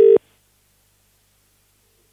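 British telephone ringing tone heard down the line: the second half of a double ring ends just after the start, then a silent pause before the next ring while the call is still unanswered.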